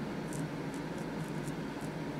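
Steady low background hum with a few faint, soft ticks scattered through it.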